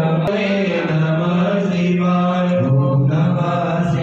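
Sanskrit mantras chanted in long, drawn-out, nearly level tones, the pitch stepping lower about two-thirds of the way through. A brief click sounds near the start.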